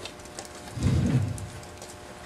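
Thin Bible pages being turned and rustling, with scattered faint crackles. About a second in comes a short, low hum from a voice.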